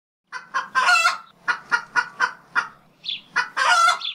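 A chicken clucking: a string of short clucks, with two longer, louder squawks, one about a second in and one at the end.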